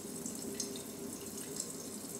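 Thin stream of water running steadily from a kitchen tap onto a small fish and hands, draining into a stainless steel sink.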